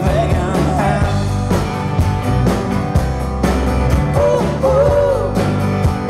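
Live rock band playing with a steady beat, a sung or melodic line rising over the band about four seconds in.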